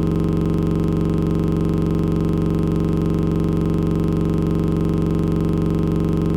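A steady electronic drone of several held pitches, unchanging, with a fast faint flutter underneath.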